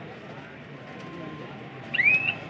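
Crowd murmur with indistinct voices from spectators around a kabaddi court. Right at the end a loud whistle cuts in, rising in pitch and then holding.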